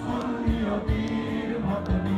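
Live rock band playing, with electric guitars, keyboard and a drum beat about twice a second, while many voices sing along together.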